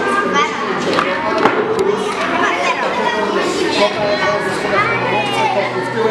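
Many children talking and calling out at once in a large hall, with a few sharp clicks among the voices.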